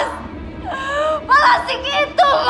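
A woman crying: high, wavering sobs whose pitch slides up and down and breaks off every half second or so.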